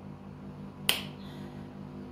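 A single sharp, snap-like click about a second in, over a faint steady low hum.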